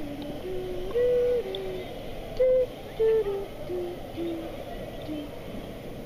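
A simple tune of pure, hooting notes, blown with the mouth pressed to an inflatable orca toy. The notes step up and down in pitch, the loudest about a second in and again around the middle, and they grow shorter and fainter in the second half.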